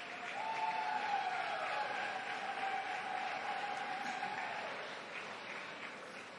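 Audience applauding the cocker spaniel as it is gaited round the ring, swelling about half a second in. One long high cheer rides over the clapping for about four seconds, then drops away.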